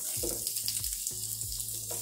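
Onion rings and garlic sizzling in hot olive oil in a frying pan as the onion is laid in by hand: a steady, high hiss of frying, under background music.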